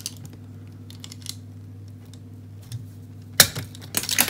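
Automatic cable stripper's cutter snipping through the wall cables together: a few faint clicks of the tool being handled, then one sharp snap about three and a half seconds in.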